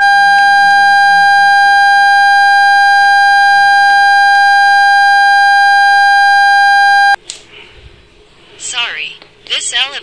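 An elevator's alarm buzzer held down from inside a stuck car: one loud, steady high-pitched tone for about seven seconds, cut off suddenly when the button is released.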